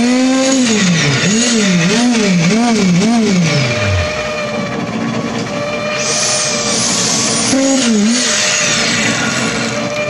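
Concrete poker vibrator running in freshly poured concrete. Its motor hum rises and falls in pitch again and again over the first few seconds, then runs at a steadier pitch with one more brief dip near the end. It is consolidating the concrete to drive out air bubbles and prevent honeycombing.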